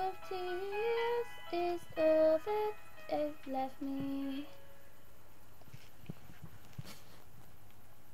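A girl singing a slow melody of held notes with no accompaniment, for about four and a half seconds, then a pause of about three seconds before the next line.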